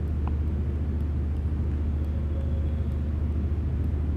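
Steady low background rumble, even in level, with no speech over it.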